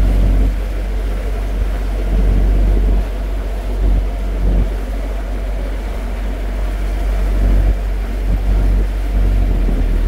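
Small passenger ferry's engine running steadily as the boat cruises, a low rumble, with wind buffeting the microphone.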